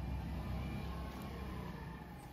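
Faint low engine rumble of a small motorbike in the street, slowly fading away.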